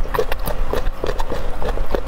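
Close-miked chewing: wet mouth clicks and crunches in a quick, uneven rhythm.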